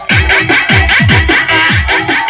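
Loud electronic dance music, a DJ remix, with a fast, even beat of deep, downward-sliding bass kicks and crisp hi-hat ticks. The beat comes in suddenly after a brief break.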